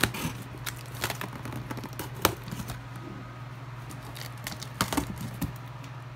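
Small scissors cutting through the packing tape on a cardboard box, with irregular clicks and taps from the blades and hands on the cardboard; the sharpest click comes about two seconds in.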